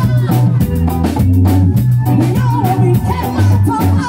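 Live reggae band playing: a heavy bass line and drum kit beat under keys and guitar, with a lead singer's voice over the top.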